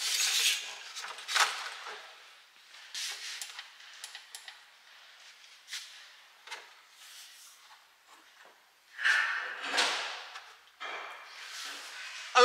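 Scattered handling noises from someone moving about at an open car engine bay: brief rustles and a few soft knocks and clicks, with a longer rushing noise about nine seconds in.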